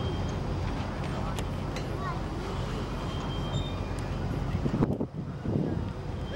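Freight cars rolling past on the rails: a steady low rumble of wheels with scattered clicks, easing slightly about five seconds in.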